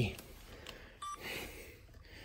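A single short electronic beep about a second in, from a handheld camera gimbal that is getting confused, amid faint handling noise.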